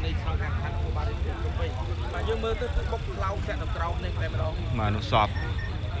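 Road traffic at a busy roundabout: the steady low rumble of cars and motorbikes passing, with people talking over it.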